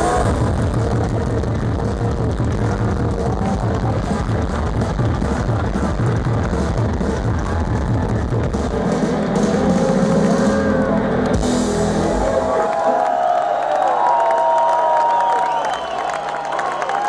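Rock band playing live through a large PA, heard from within the crowd. About three-quarters of the way through the band's bass and drums stop and the crowd cheers and shouts.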